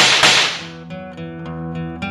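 A loud, sharp crack-like hit that dies away as a hiss over about half a second, then strummed acoustic guitar music carries on.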